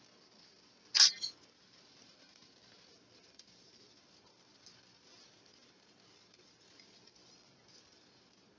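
Quiet small-room tone with a faint hiss, broken about a second in by one brief soft rustle-like noise and a smaller one just after, then two faint ticks.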